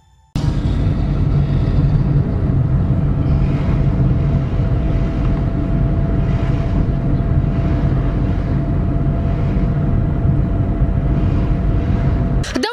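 Loud, steady low rumble of wind and vehicle noise on the microphone along a road, cutting in abruptly just after the start, with a faint steady whine running through it.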